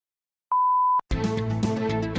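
The long final pip of a radio time signal: a steady, high electronic beep about half a second long, marking the top of the hour. It stops abruptly and the news programme's theme music starts straight after it.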